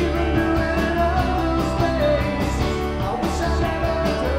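A live rock band playing: electric bass, electric guitar and drums with a steady cymbal beat, and a voice singing.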